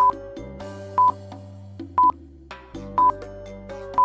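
Countdown timer beeping: a short, high electronic beep once a second, over background music.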